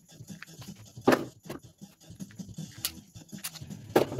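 Plastic-handled spring clamps being pulled off a glued wooden frame and put down: a handful of sharp plastic clacks, the loudest about a second in and another at the end.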